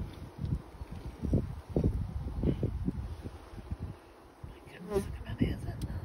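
Honeybees buzzing in a mass on a brood frame lifted out of an open hive, the buzz swelling and fading.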